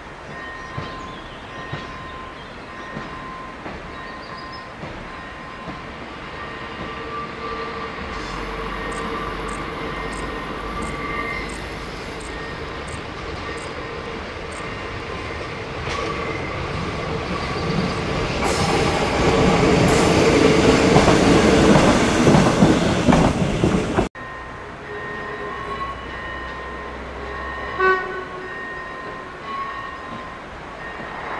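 A modern diesel railcar approaches and passes close by, getting steadily louder to a peak of engine and wheel noise over the rails, then the sound cuts off suddenly about three-quarters of the way through. A level-crossing warning signal sounds in even pulses at the start and again after the cut.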